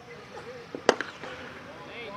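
Cricket bat striking the ball: a single sharp crack about a second in, among faint voices of players and onlookers.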